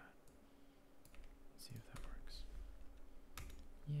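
A few scattered keystrokes on a computer keyboard, sharp separate clicks spaced irregularly.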